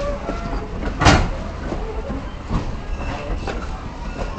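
Railway train rolling slowly with a steady low rumble and light clicks from the wheels, with one short, loud burst of noise about a second in.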